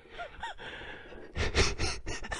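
Quiet, breathy human laughter: two short, faint 'heh' sounds, then a stronger breathy exhale about one and a half seconds in.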